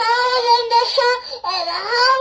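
A little girl singing loudly into a toy microphone, holding two long notes; the second swoops up from a dip in pitch about one and a half seconds in.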